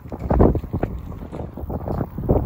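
Wind buffeting the microphone: a loud, gusty rumble that swells and drops.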